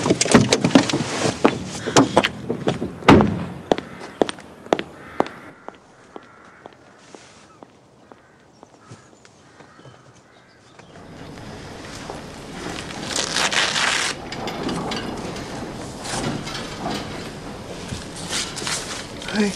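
Car door handle clicking and the door opening, with a series of sharp knocks, then the door slamming shut about three seconds in. After a quiet spell, a swelling rush of noise follows in the second half.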